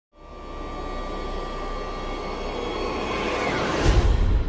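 Logo-intro sound design: a low drone with a steady high tone swelling gradually louder, then a whoosh sweeping upward near the end into a deep bass hit.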